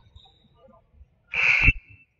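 A single short, loud, high-pitched whistle blast about one and a half seconds in, holding one pitch and trailing off briefly in the gym's echo.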